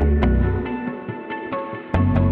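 Background music with a steady beat of about four clicks a second over a heavy bass line. The bass drops out about halfway through and comes back in with a strong hit near the end.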